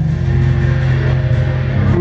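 A live rock band playing a song: bass guitar, electric guitar and keyboard together, with the bass notes loudest.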